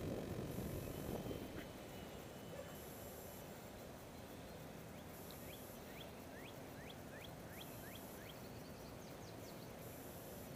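Wind rumbling on the microphone, easing off about a second and a half in and leaving a steady low outdoor hum. From about halfway through, a bird calls a run of short rising chirps, about two a second.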